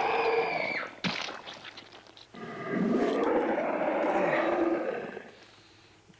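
Soundtrack of a gory killing scene on the TV: a long pitched cry that cuts off about a second in, a few short wet smacks, then a second long cry that fades away about five seconds in.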